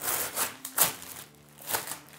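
Brown paper mailer bag crinkling and rustling in several short bursts as a pair of sneakers is pulled out of it, along with the crackle of plastic wrapping.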